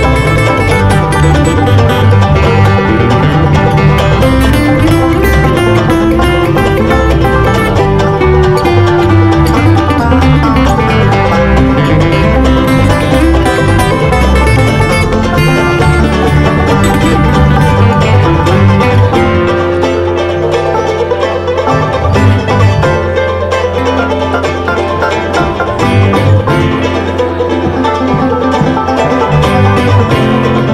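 Bluegrass string band playing an instrumental tune live, with banjo picking and guitar up front. About two-thirds of the way through, the texture thins and the bass settles into longer held notes.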